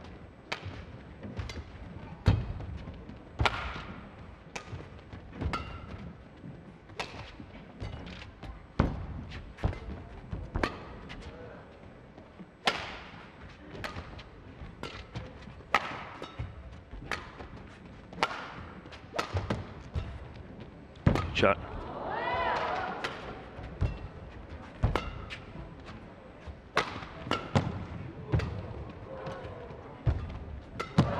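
A badminton rally: rackets striking the shuttlecock about once a second, between players' footfalls on the court. Shoes squeak on the court mat, with one long squeal about two-thirds of the way through.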